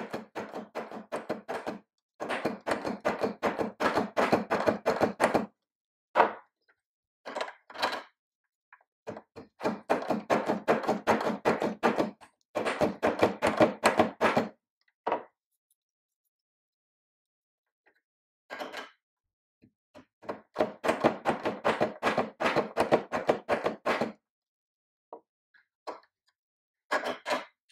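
Pfeifer single-barrel bassoon reed profiler: its cutting block is pushed back and forth over a piece of cane on the barrel, the blade shaving the cane toward its profile in runs of rapid, closely spaced clicking that last one to three seconds each, with short pauses between passes and a longer pause around the middle.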